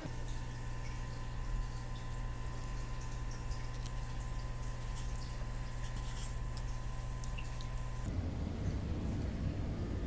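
Steady low electrical hum with faint, small wet clicks as a baby tegu licks and eats food from fingers. The hum stops and the background changes about eight seconds in.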